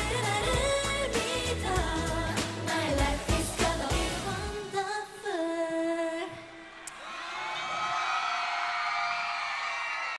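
K-pop dance-pop song performed live by a girl group singing over a backing track with a heavy drum beat. The beat stops about five seconds in on a held closing note, and softer sustained tones follow.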